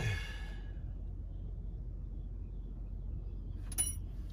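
A breathy exhale trailing off a spoken word at the start, then a steady low rumble, with a single short, sharp click near the end.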